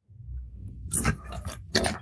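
Handling noise from a white USB charging cable being untangled between the hands: rustling and scraping, with a sharper scrape about a second in, over a low rumble of movement close to the microphone.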